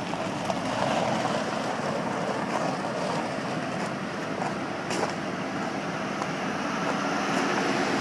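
2007 Ford Taurus sedan pulling slowly forward across a gravel lot: its engine running and its tyres on the gravel make a steady noise, with a few faint clicks.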